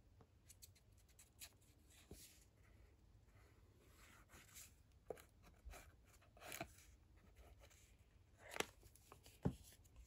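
Near silence, broken by a few faint, brief rustles and taps of card stock being handled while liquid glue is run along its folded edges, mostly in the second half.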